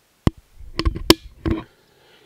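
Silence broken by a sharp click, then a quick cluster of clicks and knocks over about a second, like objects being handled on a desk.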